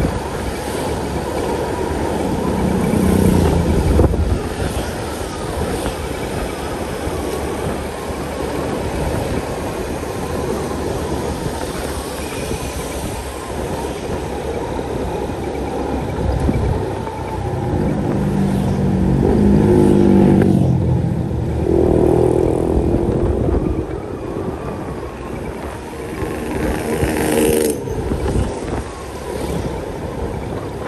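Road noise from riding along on a motorcycle: wind rushing over the microphone over the engine's running. Engine notes swell several times as the bike speeds up or as other vehicles pass, strongest in the middle and near the end.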